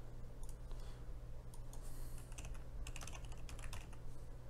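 Typing on a computer keyboard: scattered key presses in a few short runs.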